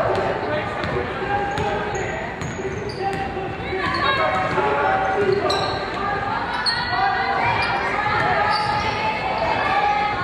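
A basketball dribbled on a hardwood gym floor, its bounces echoing in the hall, mixed with players and spectators calling out and a few brief high squeaks.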